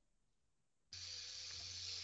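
Near silence, then a steady hiss with a faint low hum that starts abruptly about a second in.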